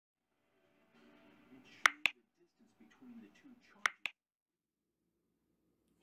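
Sharp snaps in two quick pairs, about two seconds apart, over a faint muffled voice.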